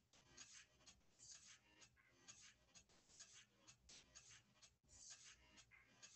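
Near silence: room tone with faint, scattered scratchy rustles.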